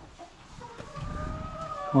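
Hens making faint, drawn-out calls, with low rustling underneath in the second half.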